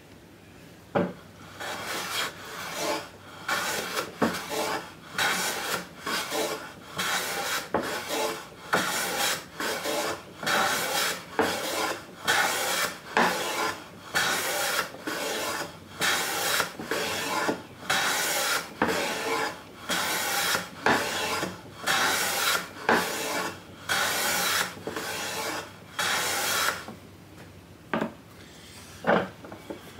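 Metal hand plane shaving wood from a board, in a steady run of long push strokes at about one a second.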